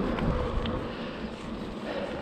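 Wind rushing on the microphone of a camera worn by a mountain biker riding along a paved road, with a low steady rumble.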